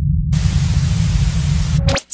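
Intro sound effect: a steady low rumble, joined about a third of a second in by a loud hiss of TV-style static. Both cut off abruptly just before the end.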